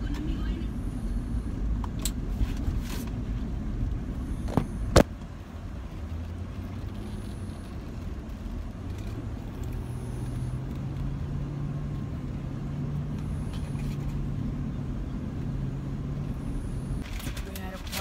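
Road and engine noise inside a moving truck's cabin: a steady low rumble with a sharp knock about five seconds in, and from about halfway a low engine drone that rises slightly in pitch as the truck picks up speed.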